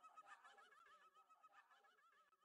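Near silence: a faint wavering, warbling tone left over as the mix's music ends, fading away.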